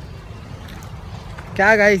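Low, steady rumble of wind on the microphone, then a man starts speaking near the end.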